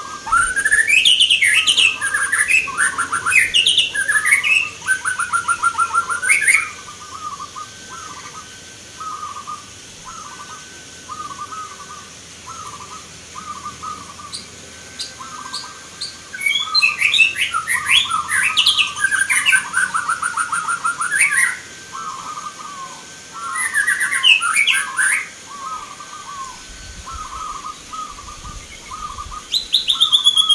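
Caged zebra doves (perkutut) cooing in short repeated notes all through, with three loud bursts of rapid chirping birdsong over them: at the start, just past the middle, and again a few seconds later.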